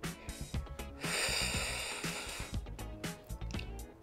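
Soft background music, with a long breath out starting about a second in and lasting about a second and a half, from a woman exerting herself in a Pilates leg exercise.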